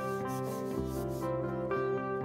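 Background instrumental music with sustained notes, and for about the first second a soft rubbing of hands sliding across the aluminium bottom case of a 2012 MacBook.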